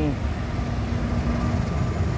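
Diesel-electric locomotive of Indonesian railways (KAI) passing close by, a deep engine rumble with a steady droning note.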